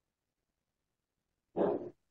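Near silence, then near the end one short vocal sound lasting under half a second.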